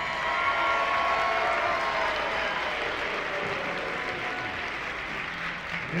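Crowd in a gymnasium applauding the team just announced. The applause swells at the start, holds steady and eases slightly near the end.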